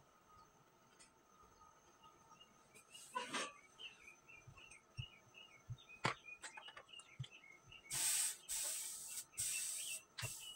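A gas iron sliding over fabric in two loud hissing swishes near the end, after a rustle about three seconds in and a sharp knock about six seconds in. A small bird chirps repeatedly in the background from about four seconds in.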